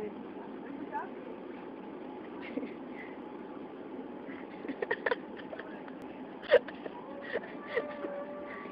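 Steady running noise of an electric motorized shopping cart as it rolls along a store aisle, with a few short clicks and brief snatches of voice.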